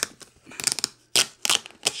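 Paper shipping label being scratched at and peeled off a cardboard box: a handful of short, scratchy tearing and scraping sounds.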